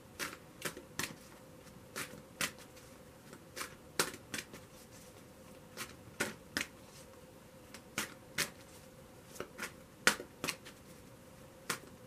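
A tarot deck being shuffled by hand, with packets of cards dropped from one hand onto the other. The cards make short, soft clicks and pats at an irregular pace of about two a second.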